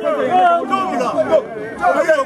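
A group of voices calling and chanting over one another, the pitches wavering up and down.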